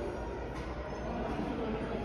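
Steady background ambience of a large indoor hotel lobby: an even, featureless hum with no distinct events.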